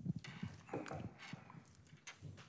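Handling noise from a handheld microphone as it is switched on and picked up: a sudden start, then a run of soft, irregular knocks and rustles.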